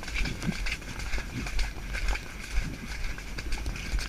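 Hoofbeats of a pony cantering on a wet, muddy track, a repeated soft beat, with wind buffeting the helmet-mounted camera.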